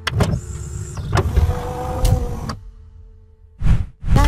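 Swooshing sound effects of an animated outro: a sweep right at the start, two more about one and two seconds in over a held tone, a short pause, then one last brief swoosh near the end.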